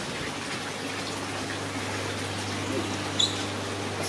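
Steady running water with a low, even hum underneath; a brief faint high tone sounds about three seconds in.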